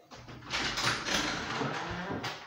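Shuffling movement, then a wooden interior door's lever handle gripped and its latch clicking with a low thump near the end as the door starts to open.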